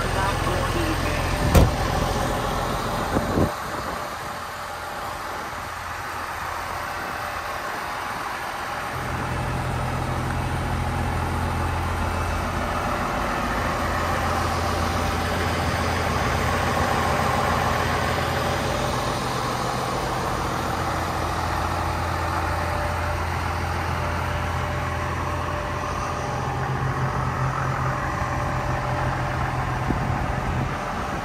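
John Deere 6615 tractor's diesel engine idling steadily. A sharp knock comes about a second and a half in, and two more follow a couple of seconds later.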